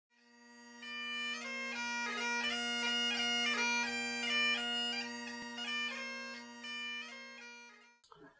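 Great Highland bagpipe playing a tune over its steady drones, fading in over the first second and fading out near the end.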